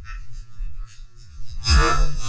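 Background music with a low steady hum, broken near the end by a sudden loud crack: a band-powered speargun firing underwater. The shaft goes out with its shooting line wrapped around the rubbers, a muzzle wrap.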